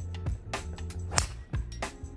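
Background music with a steady beat, and one sharp crack a little past halfway that stands out above it: a driver striking a golf ball off the tee.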